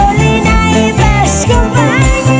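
Live Andean band music: a woman singing over strummed and plucked guitars, bass and a steady kick-drum beat about twice a second.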